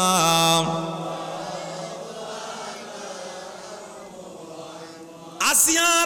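A man chanting a melodic Arabic invocation through a microphone and loudspeakers: a loud sung phrase ends about half a second in, a held tone fades slowly over the next several seconds, and a new loud chanted phrase begins near the end.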